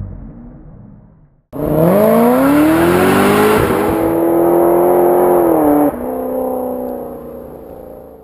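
A music track fades out. About a second and a half in, a motor engine starts revving, its pitch climbing for over a second and then holding high and steady for about three seconds. It then drops in pitch and fades away.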